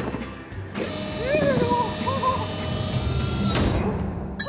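Wordless, hoot-like vocal sounds from a cartoon character: two short calls that rise and fall in pitch, over a steady low hum and a held tone. A brief swish comes near the end.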